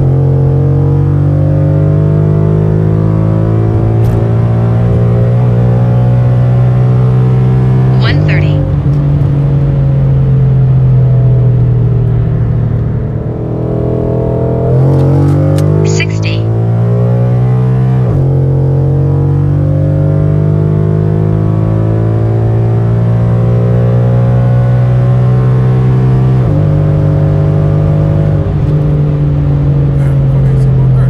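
2015 Ford Mustang engine at full throttle, heard from inside the cabin, pulling hard from 60 to 130 mph through an automatic gearbox. The engine note climbs steadily in pitch and drops sharply at each upshift. Near the middle it eases off and falls away briefly before a second full-throttle pull begins.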